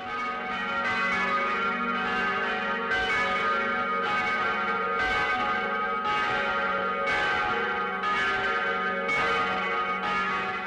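Church bells ringing: a new stroke roughly every second, each ringing on over the hum of the earlier ones.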